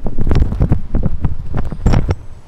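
Handling noise on a handheld camera's microphone as it is swung around and carried: low rumbling and rubbing with a run of irregular knocks, the loudest one near the end.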